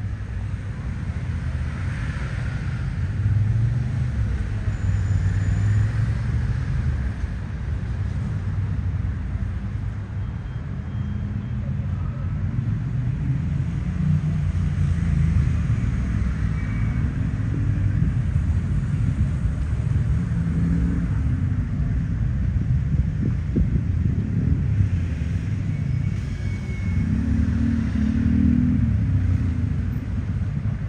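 Steady low rumble of road traffic, with the engines of passing vehicles swelling and fading a few times.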